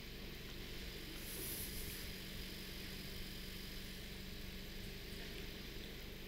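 Quiet, steady hiss with a faint low hum: the room tone of a hall, with no speech.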